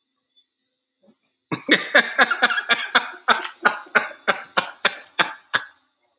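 A man laughing hard in a long run of rapid, breathy bursts, about four or five a second, starting about a second and a half in and dying away near the end.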